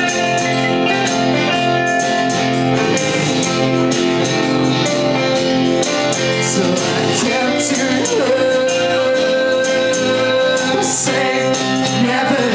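A live folk-rock band playing: strummed acoustic guitar, electric lead guitar, bass and drums, with singing.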